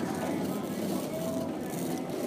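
Steady background noise of a busy store, with faint voices in it.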